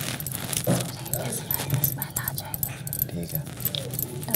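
Token coins clinking and jangling together in quick, irregular clicks as they are handled and counted out by hand beside a steel canister, with low voices.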